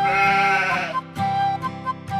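A sheep's bleat, about a second long at the start, over a bright children's instrumental tune with flute-like melody notes.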